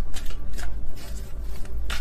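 A deck of tarot cards being shuffled by hand: a run of irregular, crisp clicks as the cards flick against each other.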